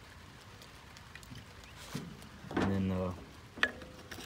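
A man's drawn-out, wordless 'uhh' lasting about half a second, a little past the middle, over a faint steady background. A short click follows near the end.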